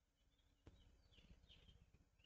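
Near silence: room tone, with a few faint high chirps and one faint click.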